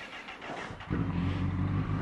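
A Honda CBR sport bike's inline-four engine starts about a second in and settles into a steady idle.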